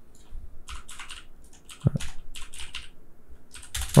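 Computer keyboard typing in short quick bursts of keystrokes, with a single low thump about two seconds in.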